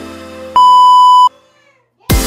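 Background electronic music with a held note fading out, then a loud, steady, single-pitched electronic beep about half a second in. The beep lasts under a second and stops abruptly, followed by a short silence.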